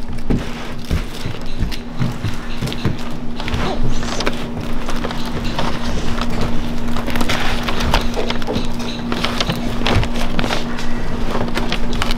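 Sheet of peanut brittle crackling and snapping as gloved hands stretch it thin and break it on a stainless-steel counter: many small irregular snaps and crackles. A steady low hum runs underneath and stops near the end.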